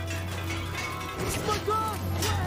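Episode soundtrack playing: background music with brief snatches of speech and small action sound effects over a steady low hum.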